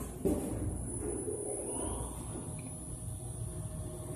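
A single thud about a quarter second in, then a low steady rumble with faint scuffing and rustling: footsteps on stairs and a handheld camera being moved about.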